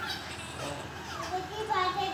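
A young child's high-pitched voice, fainter at first and louder near the end.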